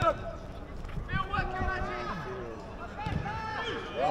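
Men's voices calling out on an outdoor football pitch: short, indistinct shouts from players at a distance, no single word standing out.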